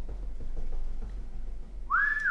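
A low steady rumble, then near the end a person starts a whistle-like note that rises and then holds: breath blown out hard through pursed lips against the burn of a very hot wing.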